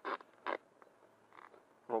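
Adhesive tape being pulled off the roll in short rips, about half a second apart, to tape ballast onto the foam nose of a model jet.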